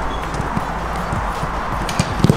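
Soft, irregular footfalls of players running on a grass pitch over a steady outdoor hiss.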